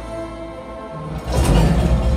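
Film soundtrack on a home theatre system: orchestral score with soft held notes, then a little over a second in a sudden loud swell with a deep rumble.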